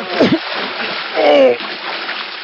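Water splashing heavily in a swimming pool, a radio-drama sound effect, with two short vocal cries over it, one just after the start and one a little past the middle.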